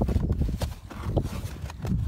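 Felt trunk-liner trim being pulled back by hand: a quick, irregular run of scuffs and knocks over a low rumble.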